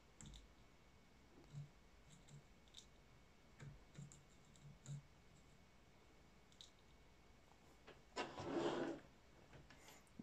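Faint, scattered clicks and taps of hands handling charger leads and alligator clips on a battery pack's terminals, half a dozen small ticks over a few seconds, with near silence between them.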